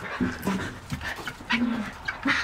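Young chickens making a few short, low calls while they peck at the feeder, with small scattered ticks.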